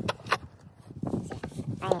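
Two short, sharp clicks close together right at the start, then faint scattered sounds until a man's voice begins just before the end.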